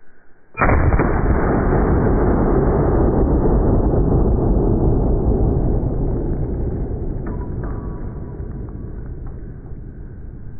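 A Smith & Wesson 500 Magnum revolver shot slowed down in a slow-motion replay: a sudden blast about half a second in, drawn out into a long, deep, muffled boom that fades slowly.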